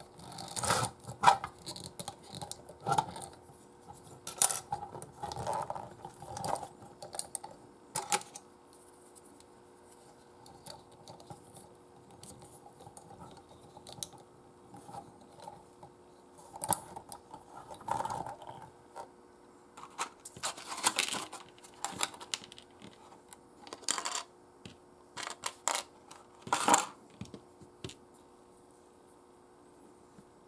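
Hands handling a die-cast and plastic robot action figure: irregular clicks, taps and short rattles as its arms are moved and its blade parts are fitted, with a quieter stretch in the middle.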